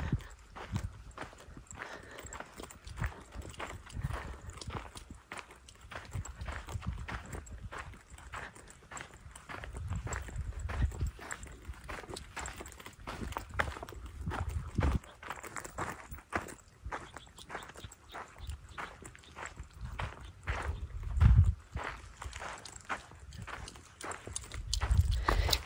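Footsteps of a person walking at a steady pace on a sandy dirt trail, with a few low rumbles between them, the loudest near the end.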